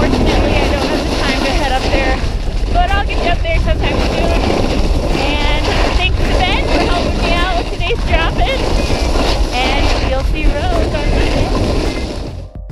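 Strong wind buffeting a handheld action camera's microphone during a fast downhill run on a groomed ski slope, a steady heavy rumble. A woman's voice breaks through in snatches without clear words.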